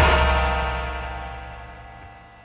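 A rock band's last chord ringing out on electric guitar and bass after the drums stop, fading away steadily.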